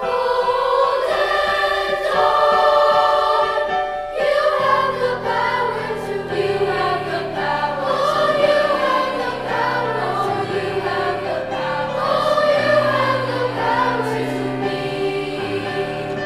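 Junior high treble choir of young girls singing with piano accompaniment; low piano notes come in underneath about four and a half seconds in.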